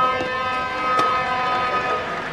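A steady, horn-like tone held for about two seconds, one unchanging pitch that stops near the end. About a second in comes the crack of a racket hitting a shuttlecock.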